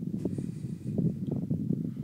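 Wind buffeting the phone's microphone: an uneven low rumble with frequent small thumps.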